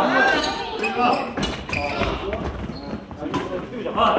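People's voices talking and calling out in a gymnasium, with scattered sharp hits and thuds from badminton play on the courts.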